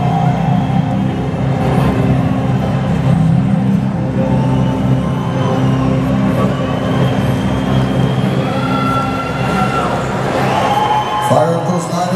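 Live concert music over the PA, heard from the audience: a steady, dark, droning intro with sustained low tones and faint crowd noise, shifting near the end.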